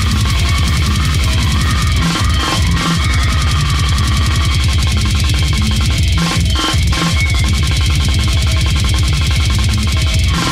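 Brutal death metal / goregrind recording: very fast, relentless blast-beat drumming under raspy, heavily distorted guitars and a heavy bass low end, played loud and without a break.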